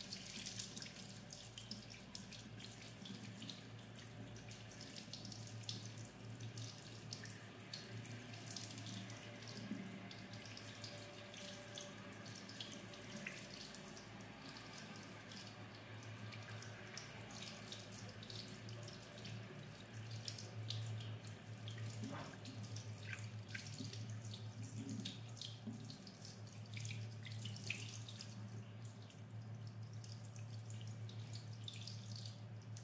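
Tap water running into a sink and splashing over a wet kitten held under the stream, faint, with small irregular splashes and a steady low hum underneath.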